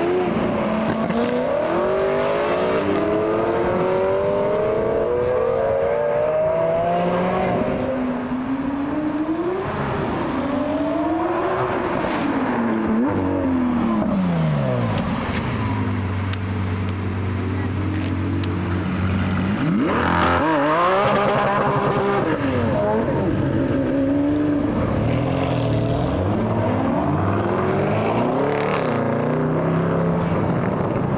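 Lamborghini Aventador V12 engines accelerating away, the engine pitch climbing again and again in the first few seconds. From about fifteen seconds in an engine holds a steady low note, then revs sharply and pulls away at about twenty seconds, followed by more rising and falling engine notes.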